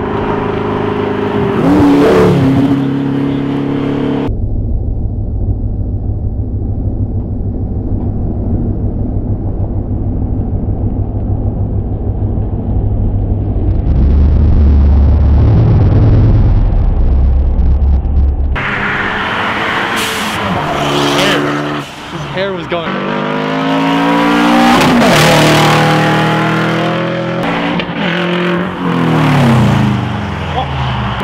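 Cars accelerating hard past spectators, engines revving and dropping in pitch as each goes by. An Audi R8 passes close near the start, then a steady low rumble runs through the middle, loudest a little past halfway, and several revving passes follow in the last third.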